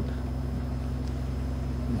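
A steady low hum with a faint even hiss, unchanging through a pause in a man's speech.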